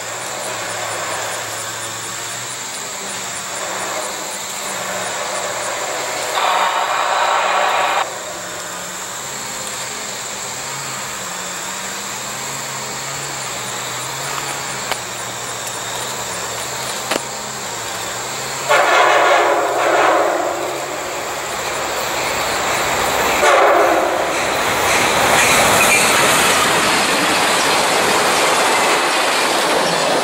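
Amtrak passenger train led by a GMD F59PH diesel locomotive approaching and sounding its horn: one long blast about six seconds in, another long one at about 19 seconds, a short one near 23 seconds. Then the train draws close with a rising rush of engine and rail noise that stays loud to the end.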